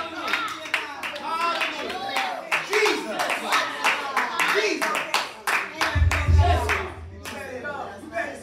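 Church congregation clapping, with voices calling out over it; a low bass note comes in about six seconds in.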